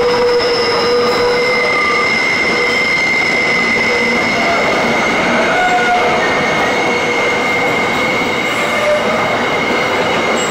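Container wagons of an intermodal freight train rolling past at close range in a steady, continuous rush of wheel and rail noise. High, held squeals from the wheels ring over it, one of them setting in about a second and a half in.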